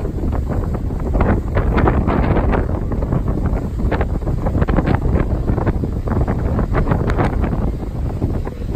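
Strong wind buffeting the microphone in loud, gusting rumbles, over the wash of ocean surf breaking on the beach.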